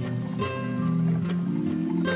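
Lo-fi hip hop music: mellow sustained chords over a slow beat with regular drum hits.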